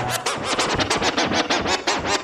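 DJ scratching on a Pioneer CDJ deck: a fast, even run of scratch strokes, about seven a second.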